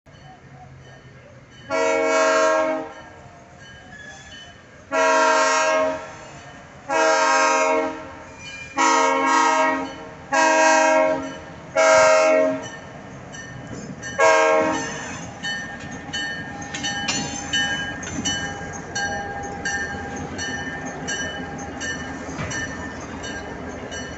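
Diesel freight locomotives' multi-note air horn blowing about seven blasts, mostly about a second long with a short last one, the crossing signal for a grade crossing. Then the locomotives pass close by, their engines rumbling under thin high squeals from the wheels on the rail.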